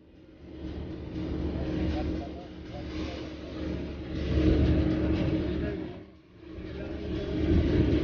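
Road and wind noise of a vehicle driving fast on a highway, heard from inside, over a steady engine hum. It swells louder about halfway through and again near the end.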